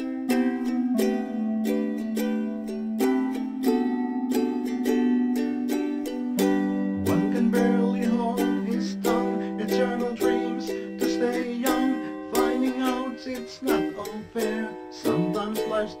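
Instrumental passage of a lofi song: ukulele strummed in a steady rhythm, the chord changing every few seconds.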